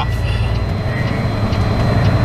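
Semi truck's diesel engine running at low speed, heard from inside the cab as a steady low rumble.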